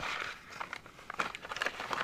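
Handling noise: light crinkling and rustling with scattered small clicks.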